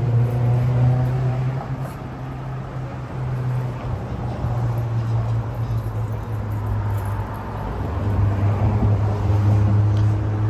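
City street traffic with a steady low engine hum, easing a little a couple of seconds in and growing louder again near the end.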